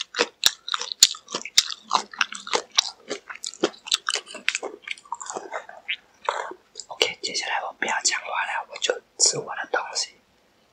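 Close-miked chewing of crispy fried chicken: rapid crackling crunches of the coating in the first half, then softer, wetter chewing mixed with a mumbled voice in the second half.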